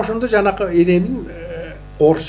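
Speech: a person talking into a studio microphone, with one long drawn-out vowel about half a second in.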